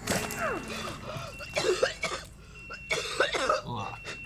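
Soundtrack of a TV episode: a person coughing and making short strained vocal sounds, with a thin high tone that comes and goes.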